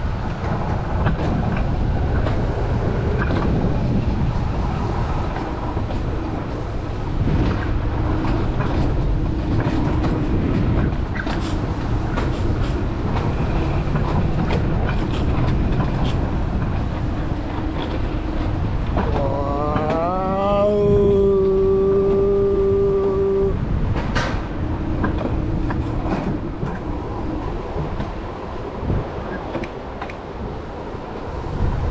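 Alpine coaster cart running down its metal rails: a steady rumble and rattle of wheels on track, with wind on the microphone. About two-thirds of the way in, a long tone rises in pitch and then holds for about three seconds.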